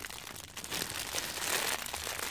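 Clear plastic packaging bag crinkling as hands squeeze a foam squishy toy through it, an irregular soft crackle.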